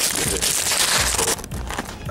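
Crackling, rustling handling noise of fingers rubbing over a handheld camera's microphone as it is repositioned, stopping abruptly a little past halfway.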